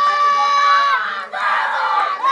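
A group of young ballplayers shouting and cheering together: one long, high held yell for about the first second, then a burst of many voices hollering at once.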